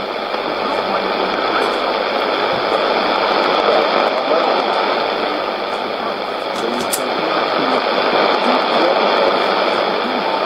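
Shortwave AM reception of Voice of Nigeria on 15120 kHz through a Sony ICF-2001D receiver's speaker: a weak, noisy signal, steady static hiss with faint traces of voice buried in it.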